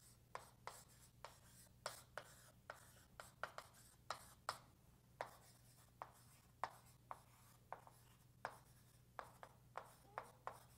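Faint writing sounds: a quick, uneven run of light taps and strokes, about two or three a second, over a low steady hum.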